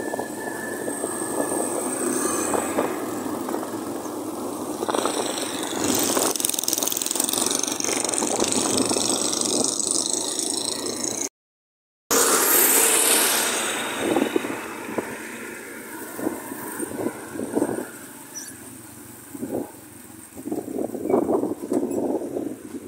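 City street traffic and wind rush heard from a moving vehicle, with engines running nearby. After a brief dropout about halfway through, a loud close engine comes in and fades, as a diesel tractor runs right alongside, followed by lighter road noise with scattered rattles and clatter.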